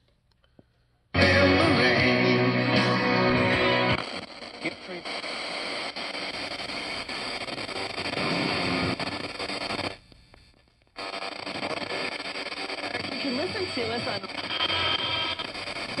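Radio broadcast of music and talk playing through the Riptunes RACR-510BTS boombox's speaker. It comes in suddenly about a second in, loudest at first, and drops out for about a second near the ten-second mark before resuming.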